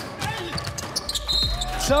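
Basketball game sounds on an indoor court: knocks of the ball and players' feet, with one brief high squeak just past the middle.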